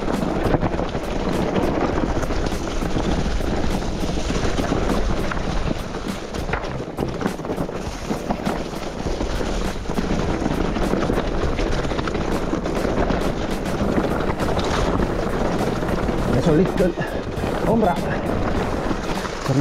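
Electric mountain bike ridden fast down a rough, rocky forest singletrack: steady rush of wind and tyre noise with frequent rattling clicks and knocks from the bike over stones and roots.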